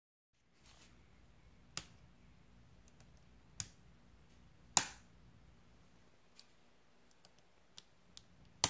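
CHNT miniature circuit breaker being switched by hand: several sharp clicks, the loudest about five seconds in. Underneath runs a faint steady electrical hum with a thin high tone from the AASD-15A servo drive setup, the whine that comes when the ground connection is switched off.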